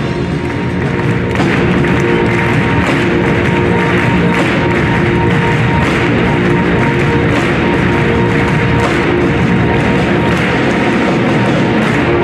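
Large marching band playing loudly, with a steady drum beat running under sustained brass chords.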